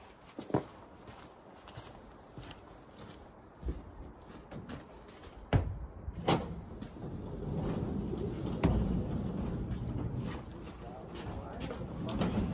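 A few sharp knocks and clanks, two close together about halfway through, over a low rough background that grows louder in the second half.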